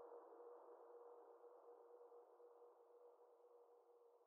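Near silence: the faint tail of an electronic song's closing sustained synth tone, a steady hum with a soft hiss around it, slowly fading out.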